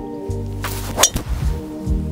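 A driver strikes a golf ball off the tee: one sharp click about a second in, the loudest sound, over background music with a steady bass.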